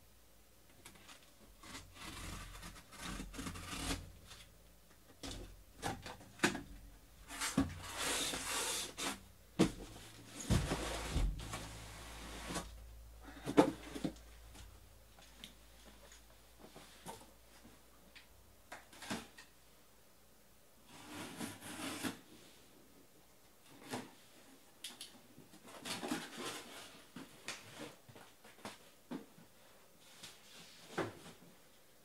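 Cardboard boxes being handled on a table: a sealed card case is opened and its inner boxes slid out and set down, with bursts of cardboard scraping and rustling and several knocks, the loudest a little before halfway.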